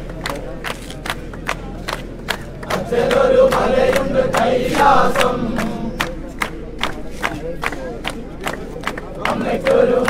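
A crowd of devotees chanting a namajapam together, kept in time by steady hand clapping at about three claps a second. The massed voices swell about three seconds in and again near the end.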